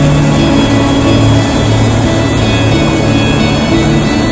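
Background music over the steady rushing noise of a hot air balloon's propane burner firing.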